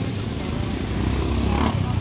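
Motorcycle engine running close by, a steady low sound in street noise, with a brief louder swell about one and a half seconds in.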